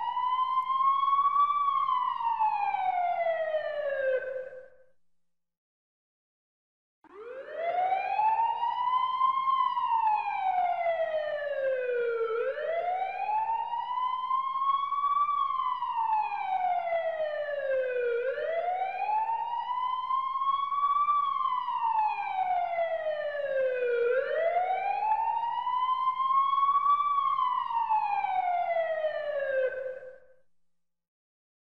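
A siren wailing, its pitch rising and falling slowly about every six seconds. It breaks off about four seconds in and starts again after a two-second silence.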